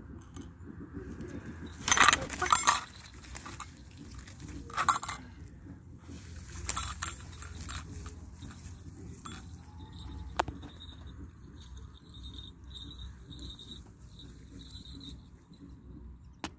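A falcon beating its wings in three short bursts, about two, five and seven seconds in, as it bates off its perch into the grass.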